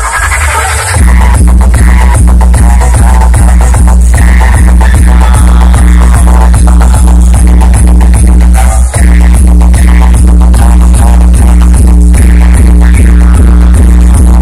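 Electronic dance music played very loud through a truck-mounted DJ box speaker stack, with heavy bass on a steady beat. The bass comes in hard about a second in and cuts out briefly near nine seconds.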